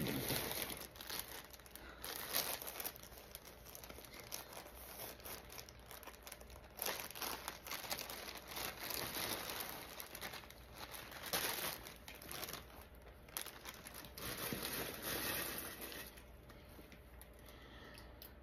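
Clear plastic packaging crinkling and rustling as a T-shirt is pulled out of it and shaken open. The crinkling comes and goes, loudest in the middle and fading near the end.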